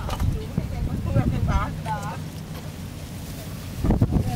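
Wind buffeting the camera microphone in a steady low rumble, with a loud gust near the end. People's voices talk in the background about a second in.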